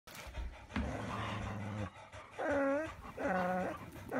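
Dogs vocalizing: a low, drawn-out sound about a second long, then two shorter, higher calls that rise and fall in pitch.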